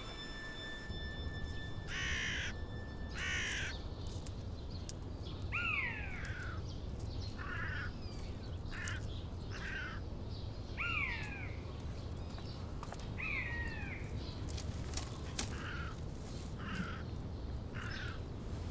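Crows cawing on and off: a string of short harsh calls, and three longer caws that fall in pitch, over a faint low outdoor background.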